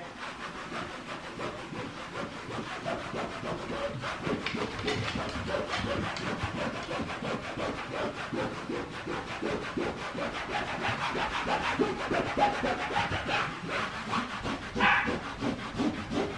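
Hand scrubbing a wall with a cleaning pad, a continuous scratchy rubbing in quick back-and-forth strokes as grime is wiped off the wall.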